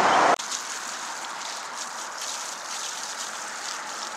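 Steady, low outdoor hiss with faint rustles. A louder rushing noise cuts off abruptly in the first half-second.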